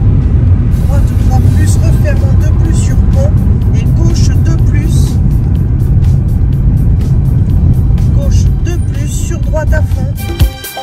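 Car driving along a road: a loud, steady low rumble of engine and road noise.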